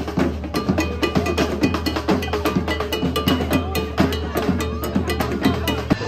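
Parade music led by drums: a quick, even beat of sharp strikes over a steady bass, with a high melody line held above it.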